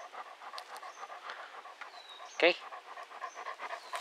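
A dog panting steadily right at the microphone, breathing fast through its open mouth.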